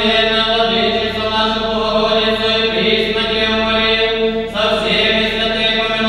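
Church chant sung by a group of voices, holding long steady notes, moving to a new note about four and a half seconds in.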